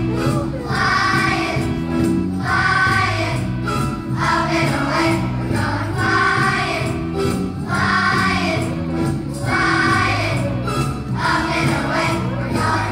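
Large children's choir singing with instrumental accompaniment, the sung phrases coming in regular pulses about once a second over a steady bass line.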